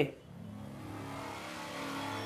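A rushing whoosh sound effect that swells steadily louder, the opening sting of a record label's logo intro on a music video.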